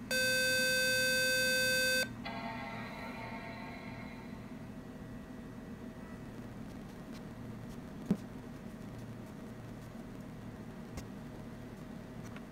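Intel Mac mini sounding its long firmware-update tone: one steady beep of about two seconds that then cuts off, the sign that the EFI firmware flash has begun. A fainter, fading tone follows, and a single click comes about eight seconds in.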